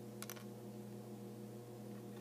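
Steady low hum with two quick faint clicks about a quarter second in, from fingers handling a small cardboard matchbox before a match is struck.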